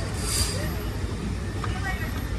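Tour trolley bus engine idling with a steady low rumble while the bus is stopped. A short high hiss repeats about once a second, the last one about half a second in.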